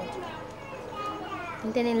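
Voices in the background, softer than the lead voice on either side, with no other distinct sound.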